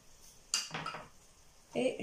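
A clink of ceramic dishes about half a second in, fading quickly, as crockery is handled on the table.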